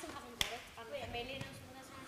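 Faint, quiet voices talking, with a single sharp knock about half a second in.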